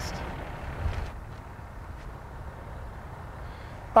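Tractor-trailer truck engine idling, a low steady rumble under outdoor background noise, with a slight swell about a second in.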